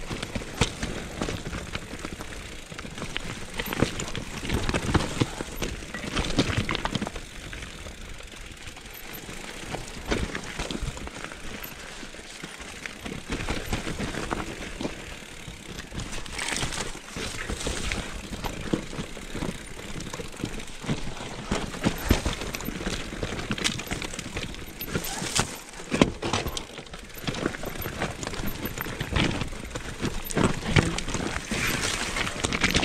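Mountain bike descending a rocky singletrack: tyres crunching over loose stones, with the bike's chain and frame rattling and knocking over the bumps in an irregular clatter, louder jolts now and then.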